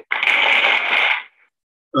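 Sound effect from a presentation slide's text animation, played as a 'Thank You' title flies in: a burst of noise lasting a little over a second that fades out, with a short silence after.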